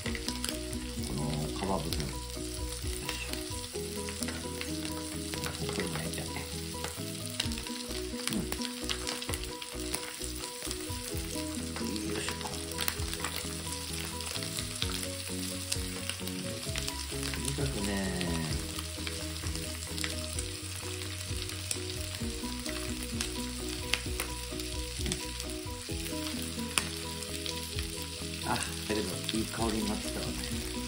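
Chicken thigh pieces frying skin side down in melted butter and a little vegetable oil in a nonstick frying pan: a steady sizzle with constant small crackles and pops as more pieces are laid in.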